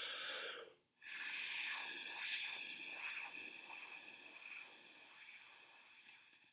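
A person blowing steadily through a bendy plastic drinking straw to keep a ping pong ball floating on the air jet. A short puff of breath comes first, then a long breathy hiss with a faint whistling edge starts about a second in and slowly fades as the breath runs out.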